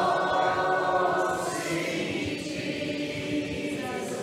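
Congregation or choir singing together, the voices holding long notes; the higher voices fade about halfway through while lower ones carry on.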